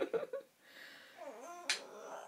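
A baby's soft vocal sounds and a short coo that slides down and back up, then one sharp click near the end as the wooden toy mallet knocks against the wooden spoon.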